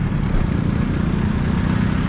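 Jeepney engine running with a steady low drone as the jeepney pulls away from the curb, over street traffic noise.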